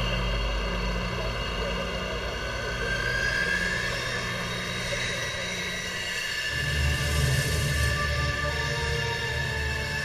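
F-16 fighter jet's engine running with a steady whine as the jet rolls along the runway, the pitch rising a few seconds in. Background music runs underneath, with a low pulsing beat coming in a little past halfway.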